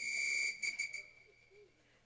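A whistle blown once: one steady high note that starts sharply and fades out over about a second and a half.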